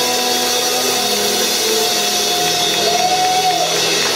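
Live bar band playing amplified rock: electric guitar, acoustic guitar, electric bass and drums, with long held notes, one bending up and back down about three seconds in.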